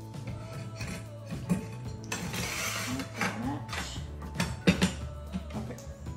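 Aluminium T-track and its steel bolts clinking and scraping against each other and the wooden benchtop as they are set into place by hand, a string of irregular sharp clicks with a short scrape a couple of seconds in, over background music.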